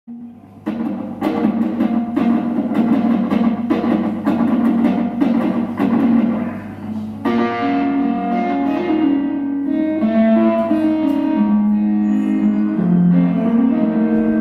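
Live music on electric guitar, starting about half a second in with sharply struck, repeated chords. About seven seconds in, the strumming gives way to sustained, ringing notes.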